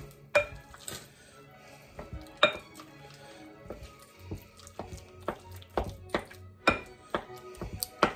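Wooden spoon mashing and stirring soft cream cheese in a glass mixing bowl, knocking against the glass in irregular taps about once or twice a second. Faint music plays underneath.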